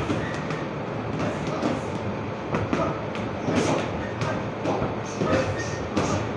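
Boxing gym training noise: irregular thuds and slaps of gloves striking heavy bags and pads, with scuffing footwork, over a steady background noise.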